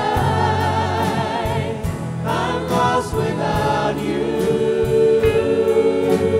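Worship team of several singers singing together into microphones, backed by a live band with a steady drum beat, guitars and piano.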